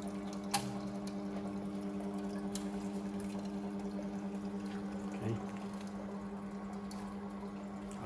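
Motors and water pump of a running desktop filament extrusion line: a steady electric hum with a fast, even pulsing, and one sharp click about half a second in.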